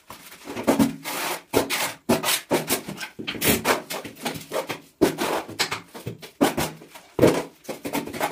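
Irregular scraping and rubbing strokes of cement mortar being worked for floor tiling, one stroke after another with short gaps, echoing a little in a small tiled room.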